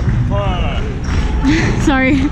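People's voices talking and calling out over a steady low rumble and dull knocks from the snare drum and its mounted camera being handled.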